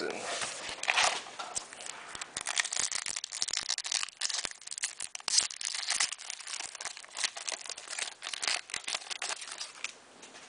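Foil wrapper of a 2003-04 Upper Deck Finite basketball card pack being torn open and crinkled by hand, a dense run of crackles.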